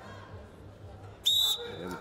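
Referee's whistle: one short, sharp blast about a second and a quarter in, heard over faint background noise. It is the signal that restarts the wrestling bout.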